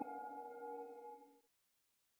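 The ringing tail of a short electronic logo chime: a chord of several steady tones dies away over about a second and a half, then stops into silence.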